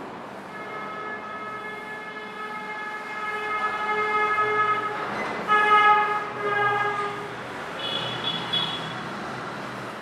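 A vehicle horn sounding: one long steady blast of about four and a half seconds, then a shorter blast, then a brief higher-pitched tone near the end. Underneath, the rubbing of a duster wiping a whiteboard.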